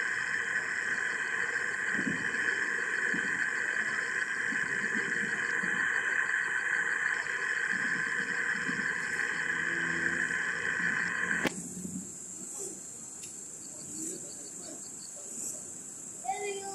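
Damaged, glitchy audio from a corrupted recording: a steady high-pitched buzzing drone that cuts off with a sharp click about two-thirds of the way through, leaving a much quieter background with a few faint sounds.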